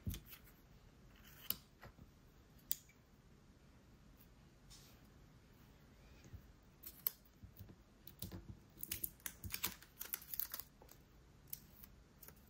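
Light clicks and scrapes of nail-stamping tools being handled: a plastic scraper card on a metal stamping plate, set down on the table, then a stamper picked up. There are a few separate clicks in the first seconds, then a quick run of clicks and scrapes in the second half.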